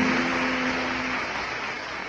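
Audience applauding at the end of a song, with the last acoustic guitar chord ringing out under it and dying away about a second in; the applause slowly fades.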